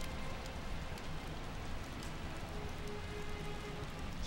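Steady, even rain-like hiss of the film's background ambience, with a faint held tone in the second half.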